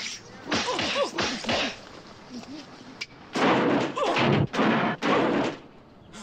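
A man's grunts and groans, then a run of loud whacks and thuds from about three seconds in, as he beats himself up in a comedy fight scene's sound effects.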